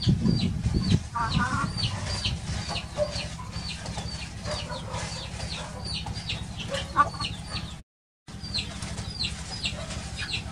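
Hen clucking now and then, over a steady run of short, high, downward chirps, about three a second. A low rumble is loudest in the first second. The sound cuts out completely for a moment near the end.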